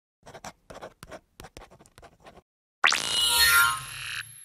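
Logo-animation sound effects: a quick series of short, faint scratchy strokes like a pen writing, then near the end a sudden loud, bright shimmering tone that rings on and fades.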